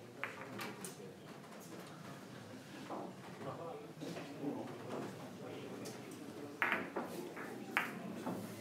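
Sharp clicks of billiard balls striking each other, with the two loudest coming close together near the end. Low voices murmur in the hall underneath.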